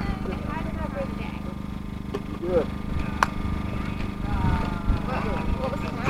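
Faint background chatter of people talking, over a steady low hum and a constant low rumble of wind on the microphone; a single sharp click about three seconds in.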